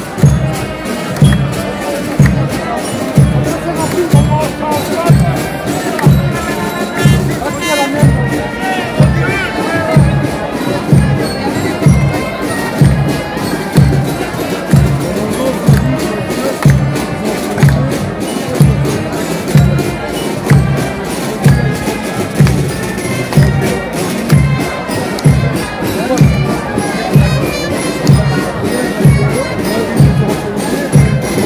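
Marching band playing in the street, driven by a steady bass drum beat of about one and a half beats a second, with crowd voices underneath.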